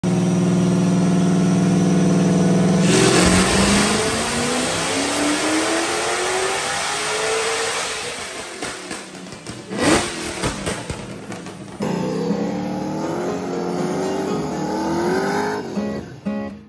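Supercharged Dodge Challenger Hellcat V8 on a chassis dyno, holding a steady note and then climbing in pitch through a pull. It pops and crackles from the exhaust with a sharp bang a little before the middle, as flames shoot from the tailpipe. After a cut, an engine revs up again near the end.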